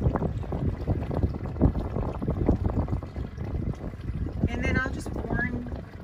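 Wind rumbling and buffeting on the microphone over water noise aboard a pontoon boat, with a brief high-pitched sound about four and a half seconds in.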